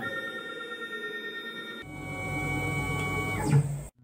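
Milling machine axis drive motors whining in steady tones. The pitch shifts about two seconds in, with a low rumble added, then glides down and stops abruptly near the end.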